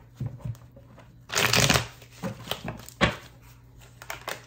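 A deck of tarot cards being shuffled by hand: a few soft flicks, a longer rustle of cards about a second and a half in, and a sharp click about three seconds in.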